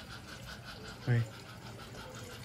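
Mostly low, steady background noise, with one short spoken word about a second in.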